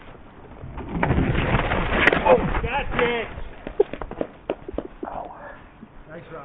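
Mountain bike crash: a loud rough rush of knocks as bike and rider go down after hitting a tree, with a man crying out partway through. Scattered clicks and knocks of the bike follow as it settles.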